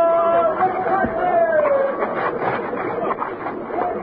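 Men's voices shouting long drawn-out calls, overlapping, which give way about two seconds in to a jumble of overlapping voices and commotion.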